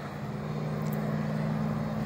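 Steady low hum of road traffic, a vehicle engine running nearby, slowly growing louder.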